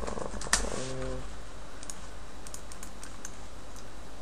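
Computer keyboard and mouse: a few keystrokes and clicks, the loudest a sharp click about half a second in, with a low electrical hum underneath.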